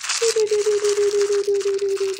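Small electric grinder running, grinding chocolate over a cake: a steady motor hum with a rapid ripple under a dense grinding hiss, starting suddenly.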